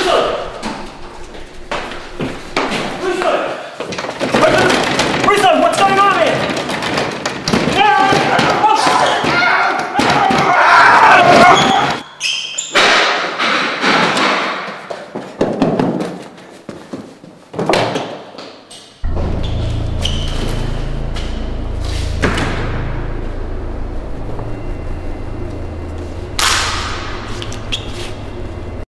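A man's wordless cries mixed with heavy thuds and bangs. About two-thirds of the way through, a low steady drone starts and holds to the end.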